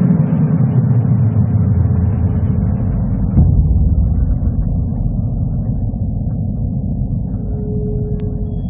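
Low, steady rumble of city street traffic, with a single knock about three and a half seconds in.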